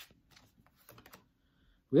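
Faint, scattered light clicks and snaps of a tarot deck being handled and shuffled in the hands.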